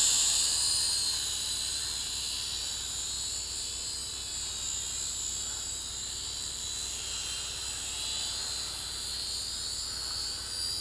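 Syma X5HW quadcopter's motors and propellers giving a high-pitched whine that fades over the first two seconds as the drone flies off and climbs, then holds steady and faint.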